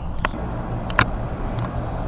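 Steady low background rumble with a few short, sharp clicks, the loudest about a second in.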